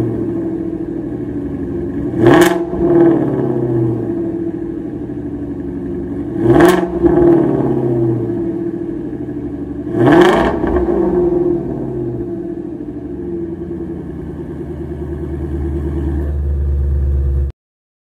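Shelby Mustang 5.2-litre V8 idling, revved three times about four seconds apart. Each rev rises and falls quickly and is the loudest moment. The sound cuts off suddenly near the end.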